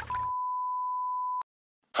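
An edited-in bleep sound effect: one steady pure tone at about 1 kHz, the standard censor beep, held for about a second and a quarter and cut off abruptly.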